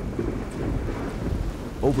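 Heavy tropical downpour with a steady low rumble of thunder.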